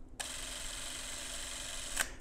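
Canon AutoZoom 814 Electronic Super 8 cine camera switched on and running, its drive motor and film transport giving a steady, even whir. It starts abruptly a moment in and stops near the end.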